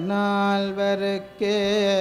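Male voice singing a Tamil devotional bhajan in two long held notes, each about a second, on a steady low pitch.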